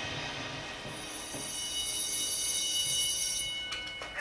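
Several steady high-pitched tones held together, from a training video's soundtrack played over room speakers, cutting off near the end.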